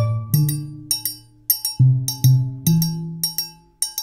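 Steel drums playing a rhythmic piece: low, ringing pitched notes struck a few times under a quick run of sharp metallic clicks.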